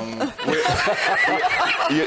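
A few people laughing and chuckling together, voices overlapping, with a word or two of speech mixed in.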